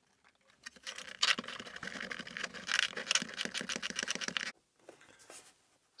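Fast-forwarded sound of pliers working long metal clamp-nails loose from the cabinet board of an old stereo tower: a rapid, dense clatter of clicks and scrapes that stops suddenly about four and a half seconds in.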